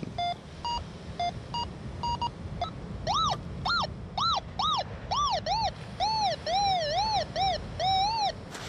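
Minelab Go-Find 66 metal detector signalling a buried target: short beeps at two pitches, then from about three seconds in a tone that rises and falls in pitch about twice a second as the coil is swept back and forth over the target.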